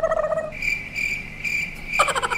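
Cricket-chirp sound effect: a lower trilling tone that stops about half a second in, followed by a high, thin chirp repeating a few times a second.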